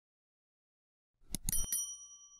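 Subscribe-button animation sound effect: a few quick mouse clicks about a second and a half in, then a bright bell ding that rings on briefly.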